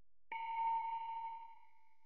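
A single bell-like chime sound effect, struck once about a third of a second in and ringing out with a clear tone that fades over about two seconds.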